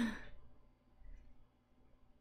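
A woman's short breathy laugh that fades out within the first half-second, followed by near-quiet room tone.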